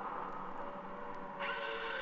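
A sustained, noisy drone from a vinyl anarcho-punk record, with a few held tones. About one and a half seconds in, higher held tones come in. Faint crackle from the vinyl sits over it.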